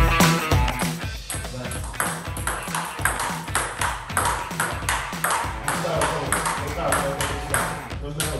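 Table tennis ball being hit back and forth in a rally: sharp clicks of ball on rubber paddles and the table top, about three a second, over background music.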